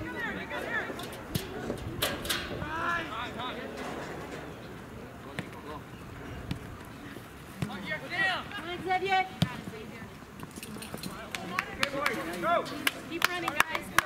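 Outdoor youth soccer match: voices of players and spectators calling out across the field, with sharp knocks of the ball being kicked, several of them in the last few seconds.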